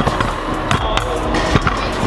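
Stunt scooter with a Lucky Prospect deck dropped onto a concrete floor in a drop test, hitting and clattering several times over about two seconds, a check on how solid and rattle-free the build is. The rider rates the result pretty bad.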